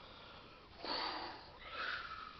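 A man's audible breaths through the nose, two short sniffs or snorts: one about a second in and one near the end.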